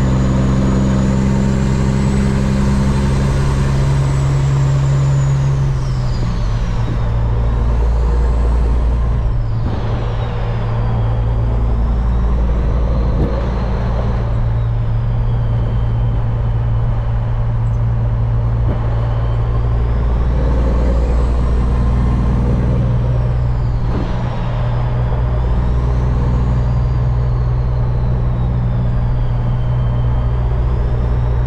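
Semi truck's diesel engine running while driving, heard from inside the cab. The engine note drops about six seconds in and again near 24 seconds, and a faint high whine wavers up and down above it.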